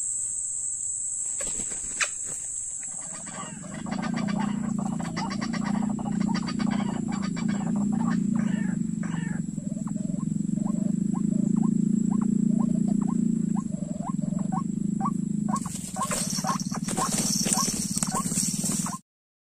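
White-breasted waterhen calling: from about four seconds in, a long run of repeated low croaking and grunting notes over a steady high insect whine. Near the end comes a burst of rustling and wing-flapping as a bird comes at the net.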